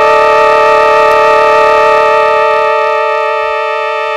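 Circuit-bent Yamaha PSS-9 Portasound keyboard stuck on a single held electronic tone with several overtones, a crash of its starved circuit. A faint low pulsing under the tone drops away about three seconds in.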